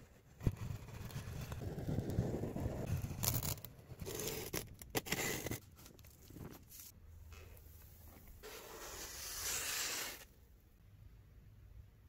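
A knife blade slits the packing tape on a cardboard box, starting with a sharp click and running into scraping and tearing. Then the cardboard flaps and inner packing are handled and slid out, with a longer scrape of cardboard near the end.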